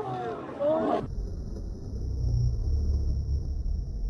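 A person's voice calling out with rising and falling pitch, cut off abruptly about a second in. After that comes a low, uneven rumble of wind buffeting the microphone, with a faint steady high-pitched tone.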